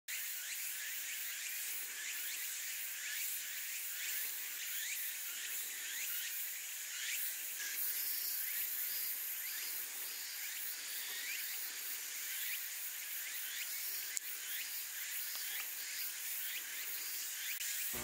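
Dense forest insect chorus: a steady high buzzing with many short, repeated rising calls, and one brief click about fourteen seconds in.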